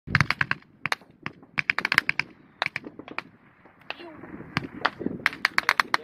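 Automatic small-arms fire: rapid bursts of several sharp shots, about ten a second, repeated with short pauses between bursts.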